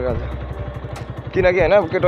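A man talking, with a pause in the middle, over a low steady rumble.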